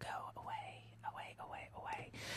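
A woman whispering in short, soft phrases into a studio microphone, over a steady low electrical hum.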